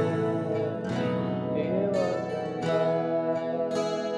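Music: a lo-fi acoustic folk-rock song in an instrumental passage, acoustic guitar strummed and picked, with fresh strums about a second in and twice more near the end.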